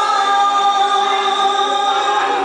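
A woman singing into a microphone, holding one long note.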